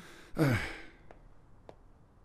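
A man's weary sigh, a falling "ay", then faint footsteps starting up carpeted stairs, a step about every half second.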